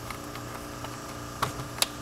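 Two short clicks close together about a second and a half in, from a wire being pressed into a car's plastic windshield-pillar trim, over a steady low hum.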